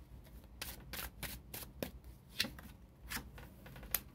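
A deck of tarot cards being shuffled by hand: a quick, irregular run of short card slaps and riffles.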